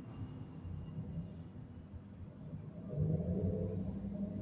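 Low rumble of a vehicle engine on the street, growing louder about three seconds in.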